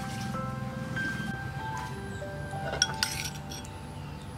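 Background music with a melody of held notes, and two sharp clinks of a utensil against a plate about three seconds in.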